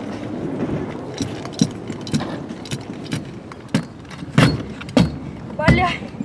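Trick kick scooter wheels rolling over the skatepark surface, with several sharp clacks of the scooter hitting the ground, the loudest two about four and a half and five seconds in. A voice calls out briefly near the end.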